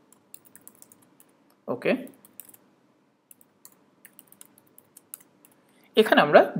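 Typing on a computer keyboard: scattered, irregular key clicks with short pauses between runs of keystrokes.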